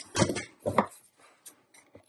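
A dog barking twice in quick succession, short barks about half a second apart.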